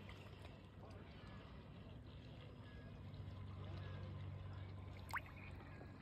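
Faint lapping and trickling of shallow lake water around a hand holding a trout at the surface, with one brief rising squeak about five seconds in.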